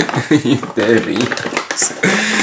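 Household objects knocking and clinking on cupboard shelves as they are moved about, a run of short clicks and clatter, with a man's wordless voice over it.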